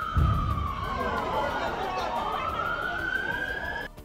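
Emergency vehicle siren wailing: one slow falling sweep, then a slow rising sweep that cuts off just before the end. A brief low rumble comes at the very start.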